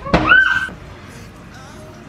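A short knock, then a brief high-pitched squeal from a child's voice that rises and holds for about half a second before dying away.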